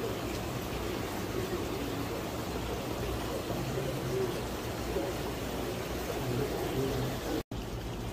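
Steady trickling and hiss of running water from aquarium filters and tank circulation. The sound cuts out for an instant near the end.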